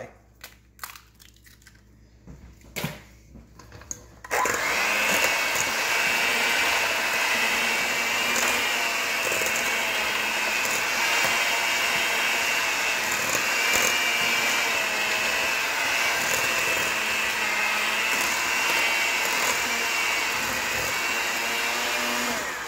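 Electric hand mixer switches on about four seconds in and runs steadily with a whine, its beaters creaming sugar and eggs in a stainless steel bowl. Before it starts there are a few light knocks.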